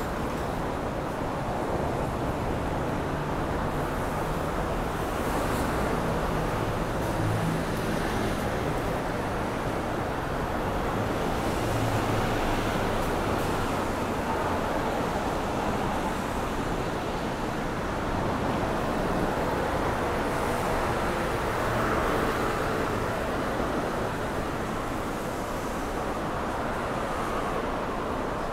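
Steady rush of city road traffic, cars passing on the street beside the pavement with a low engine hum that swells and fades a little.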